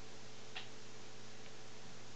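Pause in speech: steady faint hiss and hum, with a faint click about half a second in and a fainter one about a second later.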